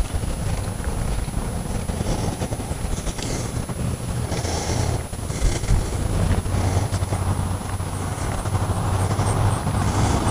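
Wind buffeting the microphone outdoors, a low, uneven rumble.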